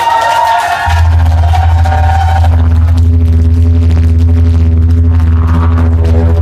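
Live rock band's amplified guitars and bass: high ringing guitar notes gliding in pitch, then from about a second in a loud, steady low drone held under a sustained higher note.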